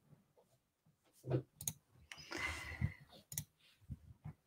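A few faint, short clicks about a second in and again past three seconds, with a brief soft hiss between them.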